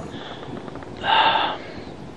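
A short breathy exhale from a person, about half a second long and about a second in, over faint wind noise on the microphone.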